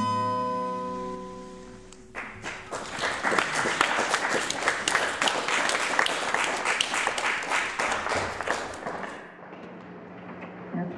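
Final acoustic guitar chord ringing out and fading, then a small audience applauding for about seven seconds before the clapping dies away.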